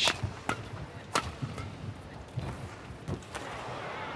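Badminton racket strikes on a shuttlecock during a rally: sharp hits about half a second apart in the first second or so, then a few lighter knocks, and a soft hall crowd noise coming up near the end as the rally finishes.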